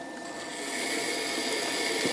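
Loop trimming tool scraping clay off the base of a bowl on a spinning potter's wheel, cutting a shallow foot. A steady scraping hiss that grows louder as the tool bites in.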